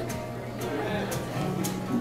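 Acoustic guitar played softly, a few quiet notes ringing on from about a second in.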